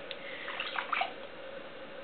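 Soft, faint handling sounds of hands on a wet clay piece, a few light rubs about half a second in, over a steady background hiss and a faint hum.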